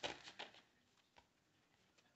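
A few faint taps and rustles as a stack of budget binder divider sheets is handled, then near silence.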